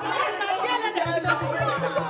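Several women shouting and arguing over one another in a heated quarrel. Background music runs underneath, and its low bass beat comes in about a second in.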